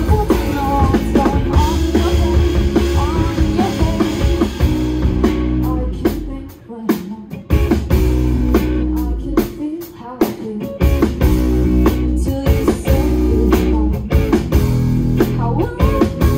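Rock band playing live: electric guitars, electric bass and drum kit, with a woman singing. About six seconds in, the bass and drums drop out for a moment, then the full band comes back in.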